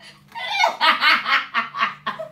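A woman laughing hard in a rapid run of short 'ha' bursts, starting just under half a second in after a brief pause.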